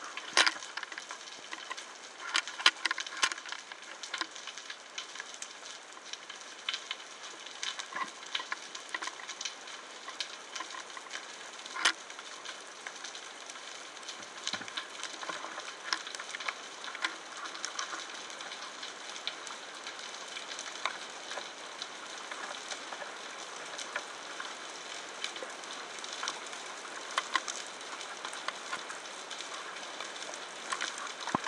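Underwater ambience over a rocky reef: a steady, dense crackle with scattered sharp clicks and pops throughout.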